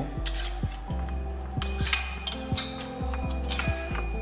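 Background music with a steady beat and sustained bass notes.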